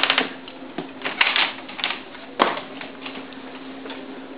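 A string of clicks and knocks from a house door being handled and shut and footsteps on the floor, the loudest knock about two and a half seconds in, over a steady low hum.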